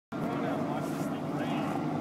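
Several people talking in the background over a steady low mechanical rumble.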